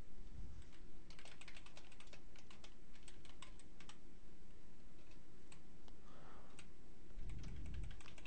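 Typing on a computer keyboard: a run of quick, irregular key clicks that stops shortly before the end.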